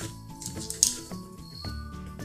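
Soft background music with held notes, over a few light clicks of a metal hook against the plastic pegs of a Rainbow Loom, the sharpest just under a second in.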